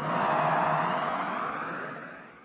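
An electronic whooshing transition sound effect that starts suddenly, with a faint steady tone beneath, and begins to fade near the end.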